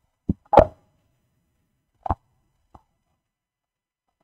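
A few short thumps and knocks picked up by a live microphone, typical of the mic being handled or passed between speakers. The loudest comes about half a second in, with two fainter ones about two seconds later.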